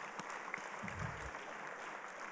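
Audience applauding, a steady even clapping of many hands.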